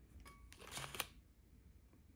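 Clear plastic wrappers of individually wrapped sweets crinkling and rustling briefly as they are handled and set on a ceramic plate, the loudest crackle about a second in, then dying away.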